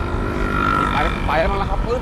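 A motorcycle engine passing close by with a steady note for about a second, over continuous street traffic noise.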